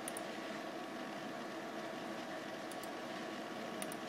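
Steady background hiss and hum of a room with a running computer, broken by two or three faint, sharp mouse clicks as menu items are picked.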